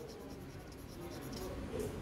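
Graphite pencil shading on drawing paper: a run of short, faint scratching strokes laid close together as hatching.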